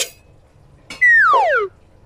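A cartoon-style slide-whistle sound effect: one loud whistle falling steadily in pitch for under a second, about a second in, preceded by a short click.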